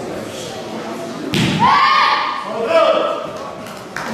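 A sharp thud about a second in, then loud kihap shouts from the two young taekwondo athletes as they finish a move of their pair poomsae, in two parts with the second shout near the three-second mark.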